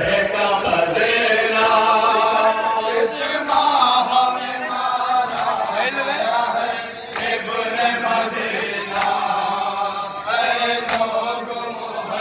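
Men chanting a noha, the Shia lament for Karbala, together in a sung chorus, with sharp slaps about once a second keeping the beat, the rhythm of matam chest-beating.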